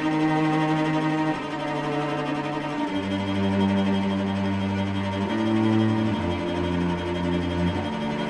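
Recorded music: bowed strings, cello and violin, holding slow sustained chords that change every second or two.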